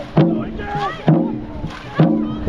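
Dragon boat crew paddling at race pace: a sharp beat marks each stroke about once a second, with shouted calls between the strokes.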